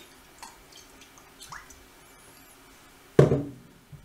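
Olive oil poured from a bottle into a hot nonstick frying pan, with a few faint drips and ticks. One loud, short knock comes about three seconds in.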